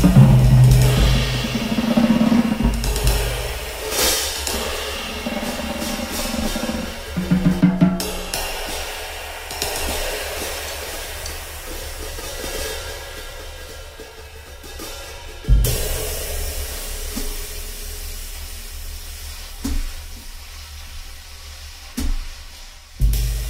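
Vintage 1969 Gretsch Round Badge drum kit with calfskin heads and 1940s K Zildjian cymbals, played loosely. Heavy bass drum and tom hits come at the start, then sparse strikes with the cymbals left ringing and fading, and one sharp loud hit past the middle.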